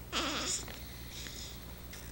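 Newborn baby making a brief squeaky grunt with a wavering pitch while sucking on a bottle, about half a second long near the start.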